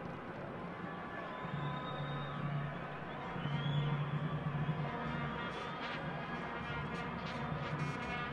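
Football stadium crowd ambience heard through the match broadcast: a steady low drone with faint drawn-out music-like tones from the stands.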